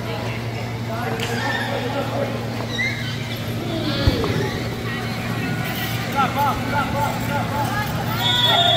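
Sports-hall ambience during a power soccer game: scattered distant voices over a steady low hum, with one sharp knock about four seconds in and a quick series of short high squeals near the end.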